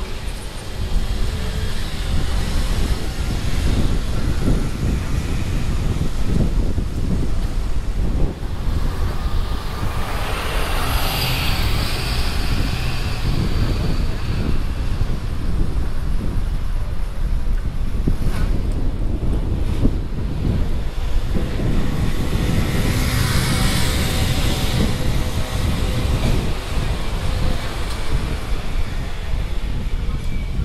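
Wind buffeting the binaural earphone microphones over the sound of street traffic. Two vehicles pass louder, about ten seconds in and again about twenty-three seconds in.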